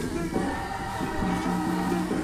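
A choir singing a gospel song, with long held notes that change every half second or so.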